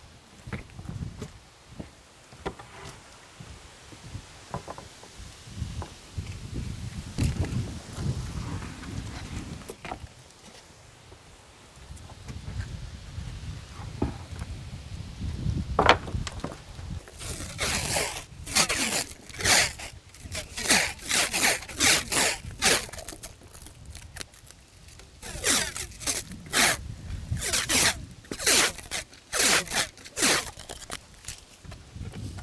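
Work at a stack of pulled wooden deck boards: handling thuds and one sharp knock about halfway, then a run of short raspy strokes, several a second, in two spells.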